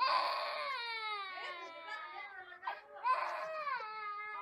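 A baby crying: a long wail that starts suddenly and falls in pitch, then a second, shorter wail about three seconds in.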